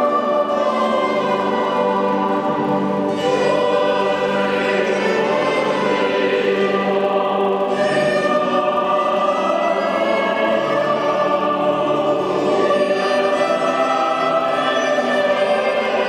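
Mixed choir of men's and women's voices singing a South American baroque piece, with sustained chords that run on without a break.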